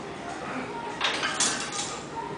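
Indistinct voices in the background of a large gym, with three short hissing bursts in quick succession about a second in, the middle one the loudest.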